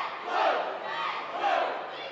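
Cheerleaders shouting a cheer in unison over crowd noise in a gymnasium: two loud shouts about a second apart.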